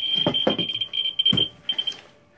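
Geiger counter sounding very fast, its clicks running together into a steady high buzz at about 20,000 counts a minute from uranium-glazed Fiesta ware. Near the end the buzz breaks into separate pulses and stops, with a few handling knocks.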